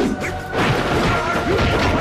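Film fight sound effects: a quick series of hits, whooshes and a crash over dramatic background music.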